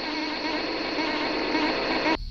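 Electronic ambient music: a dense, buzzing synthesizer texture of many wavering tones, held steady throughout.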